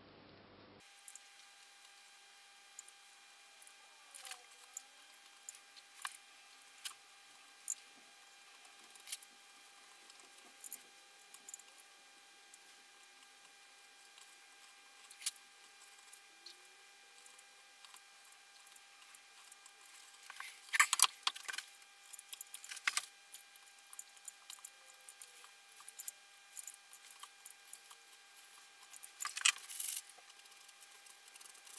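Craft knife blade scraping and picking at the splintered edges of string-through holes in a wooden guitar body: faint, scattered ticks and scrapes, with a louder run of them about two-thirds of the way in and again near the end.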